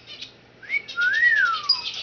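Timneh African grey parrot whistling: a short rising note, then a longer note that rises and falls away.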